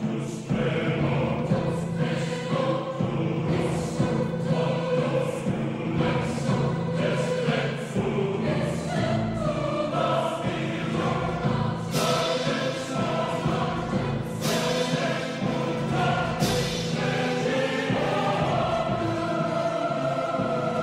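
Orchestral film score with a choir singing sustained chords, punctuated by three loud percussive strikes in the second half.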